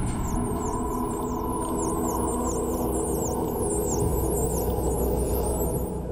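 A chorus of dolphin whistles, many overlapping high glides that each dip in pitch and rise again, over a low sustained soundtrack drone with a gong. The whistles stop abruptly near the end.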